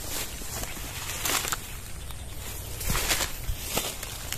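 Footsteps and handling in dry fallen banana leaves and undergrowth: rustling with a few irregular crackles.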